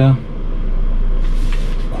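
A man's voice finishes a word just after the start, then a steady low hum of room background noise fills the pause, with a soft hiss late in the pause.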